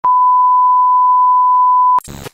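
Television test-tone beep from a 'signal lost' glitch transition effect: a single steady, high beep held for two seconds, starting and cutting off abruptly.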